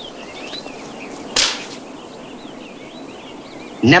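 A single sharp slap, a hand striking the student's head as he bows, about one and a half seconds in. Birds chirp lightly throughout.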